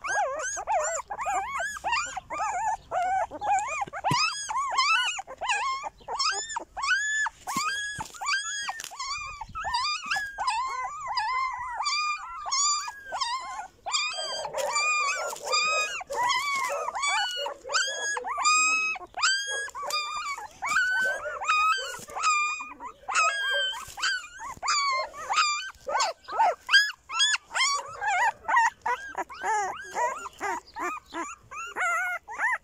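A litter of newborn shepherd puppies whining and squealing: a continuous run of short, high cries, each rising and falling in pitch, a couple a second from several pups, loudest near the end.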